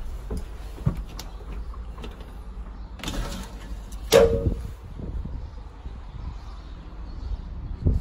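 A door being opened onto a rooftop deck: sharp latch and handle clicks, a noisy swing, and a louder knock about four seconds in, over a steady low outdoor rumble.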